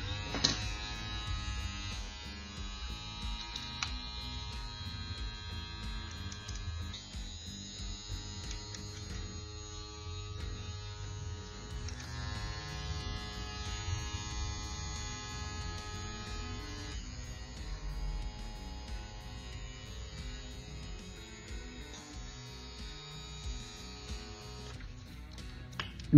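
Gamma+ Cyborg cordless hair clipper switched on about half a second in and running steadily with a guard fitted, a motor hum with a buzz, under quiet background guitar music.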